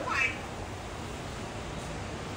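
A short, high-pitched vocal sound that bends in pitch at the very start, then a steady low background hiss.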